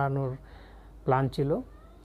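A man's voice in two short utterances separated by pauses.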